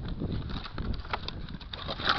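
Hands rummaging through crushed boat wreckage: scattered crackles, clicks and rustles of broken fiberglass, foam and wire being moved.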